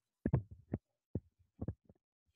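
A stylus tapping and dragging on a tablet screen as a number is handwritten: about eight short, soft thumps at uneven spacing.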